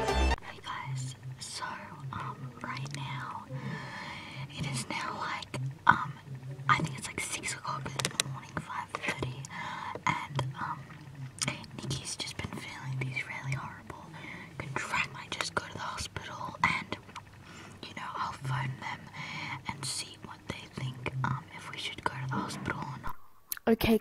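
Hushed whispering with irregular rustling and handling clicks at low level.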